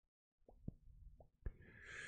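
Faint small pops of lips on a joint during a pull, then a soft breathy exhale of smoke starting about one and a half seconds in.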